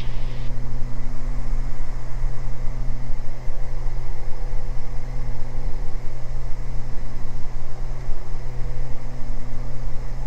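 Beechcraft G58 Baron's twin six-cylinder piston engines and propellers in a steady drone, heard inside the cockpit in the climb.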